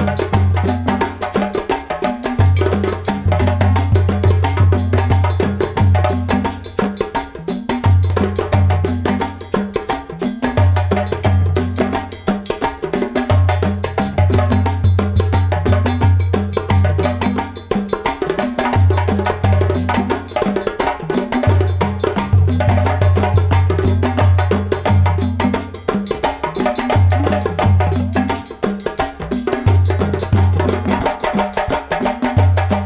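Background music with a steady, busy percussion beat over a prominent bass line.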